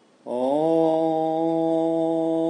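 Chanted "Om": after a brief pause, a voice glides up into one long steady note about a quarter second in and holds it.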